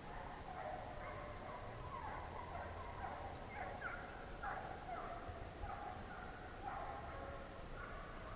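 Several hunting hounds baying, overlapping drawn-out calls that drop in pitch, one after another, the sound of a dog pack running a deer's track on a drive.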